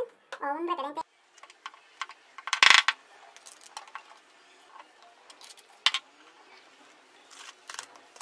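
Plastic bottles handled on a stone tabletop while alcohol is poured from a small plastic bottle into a plastic spray bottle: a faint pour under scattered light clicks, and one louder short clatter nearly three seconds in.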